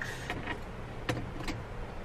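A tape measure being handled while stretched across a car's cargo opening: three short, sharp clicks over a steady low hum.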